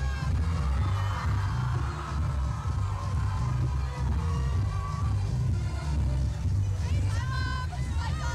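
Loud dance music with a heavy, steady bass playing over a nightclub crowd; voices rise over it near the end.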